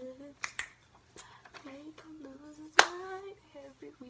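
A young woman's voice making drawn-out, wordless sung notes, cut by a few sharp clicks: a pair about half a second in and a loud one a little under three seconds in.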